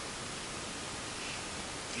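Steady hiss of room tone and recording noise, with no distinct sound standing out.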